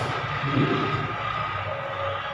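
Steady background hiss with a faint steady hum, and no speech.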